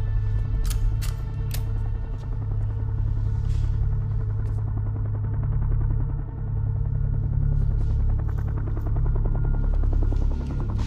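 Tense film score: a deep, steady bass drone under a fast, pulsing rhythm, with a few sharp clicks in the first couple of seconds.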